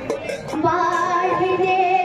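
A woman singing kirtan into a microphone. About half a second in she begins a long, steady held note.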